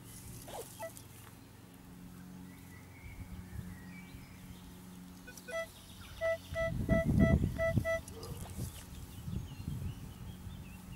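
Metal detector target-signal beeps: one short beep near the start, then a run of about six short beeps of the same pitch between roughly six and eight seconds in as the coil sweeps over a target. The signal is called very loud. A low rumble sits under the beeps.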